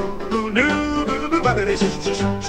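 Country-swing style song with guitar backing, playing at full level.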